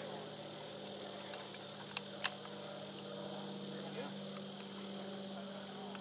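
Two sharp metal clicks a quarter-second apart, about two seconds in, from climbing hardware: a locking carabiner and rescue figure-8 being clipped and its gate screwed shut on a harness. Under them runs a steady low hum.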